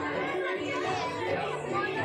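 Children's voices chattering over the dance song, which carries on underneath.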